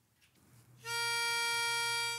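A round pitch pipe blown for one steady reed note, starting about a second in and held for about a second and a half, sounding the starting pitch for a singing warm-up.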